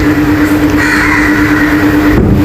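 Gravity-feed air spray gun hissing steadily as it sprays clear lacquer, over a steady low mechanical hum.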